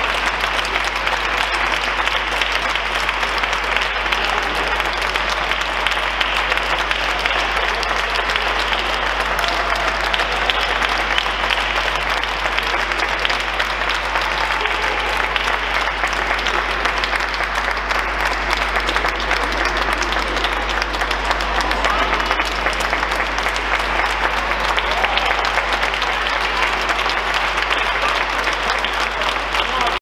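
Audience applauding steadily, a dense clapping without a break, in a large church.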